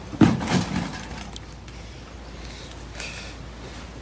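A sharp bump and brief rustle as a hand-held phone is handled and turned, about a quarter second in, then a steady low background rush.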